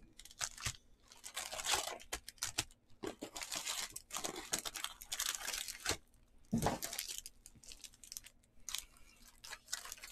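Plastic trading-card pack wrappers crinkling and rustling as packs are handled and pulled from the box, in irregular crackling bursts. A dull thump comes about six and a half seconds in.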